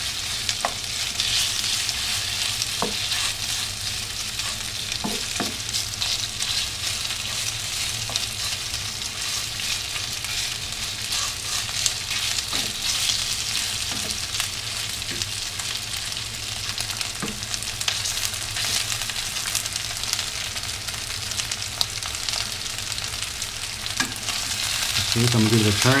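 Thin-sliced marinated beef and ginger searing in hot oil in a nonstick skillet, sizzling steadily, with scattered taps and scrapes of a wooden spatula against the pan and a steady low hum underneath.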